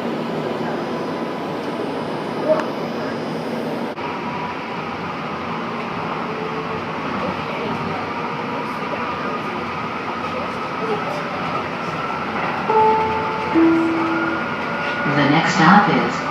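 Interior running noise of a Calgary C-Train light rail car travelling between stations: a steady rumble and hiss of the car on the track. A few short steady tones come about thirteen seconds in, and an automated voice announcement begins near the end.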